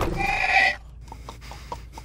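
A film zombie's open-mouthed snarl, lasting under a second, followed by a few faint clicks.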